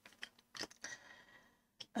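A few faint clicks and soft rustles of wooden colored pencils being handled.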